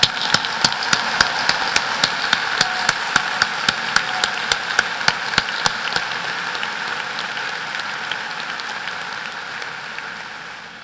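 Large audience applauding in a steady wash of clapping, with one nearby pair of hands clapping sharply about three to four times a second through the first six seconds. The applause eases off slowly over the last few seconds.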